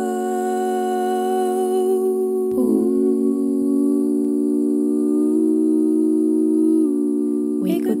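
Multitracked a cappella female voices humming a sustained, wordless chord. The harmony shifts to a new chord about two and a half seconds in and again near the end, then stops just before the next sung line.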